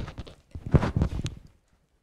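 A quick run of knocks and thumps from handling and footsteps at the lectern, clustered in the first second or so, then dying away about one and a half seconds in.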